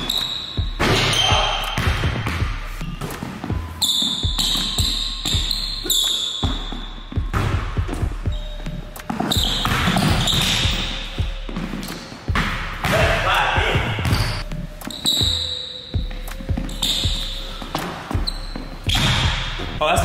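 Basketball bouncing on a hardwood gym floor as it is dribbled, the knocks echoing in the large hall, with sneakers squeaking in short high chirps.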